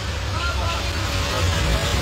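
Steady low rumble of street traffic with faint voices of bystanders.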